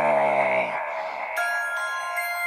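The end of a deep, sinister laugh, drawn out into one long low note that dies away within the first second. A high, chiming, bell-like melody starts about a second and a half in, opening the music.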